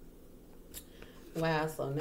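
Quiet room tone with one light click a little past the middle, then a voice starts speaking in the last half second.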